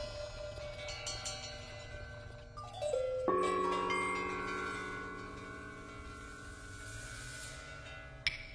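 Metal percussion in a contemporary piece: a few light ringing strikes, then a short falling pitch slide about two and a half seconds in. Just after it comes a bright metallic strike whose many pitches ring on and slowly fade.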